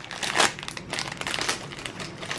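A crinkly foil blind-bag wrapper being crumpled and worked open by hand, with an irregular run of crackles that is loudest about half a second in.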